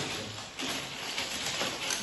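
Loose plastic Lego bricks clattering and clicking as several hands rummage through a pile of them on a tabletop: a steady run of small, irregular clicks.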